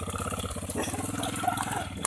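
Homemade four-wheel buggy's motorcycle engine running at light throttle as the buggy pulls away, a steady, evenly pulsing low putter.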